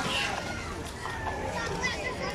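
Young children playing and calling out to each other in a shallow wading pool: overlapping high-pitched chatter and shouts.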